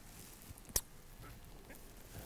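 Quiet room tone broken by one sharp click a little under a second in.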